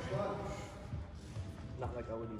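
Indistinct voices of people talking in a large gym, with a single sharp tap near the end.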